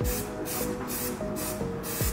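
Copper grease sprayed from an aerosol can onto the hub face of a new front brake disc, in several short hisses, over background music.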